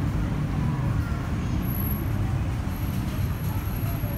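Indoor shopping-mall ambience: a steady low rumble with faint voices in the background.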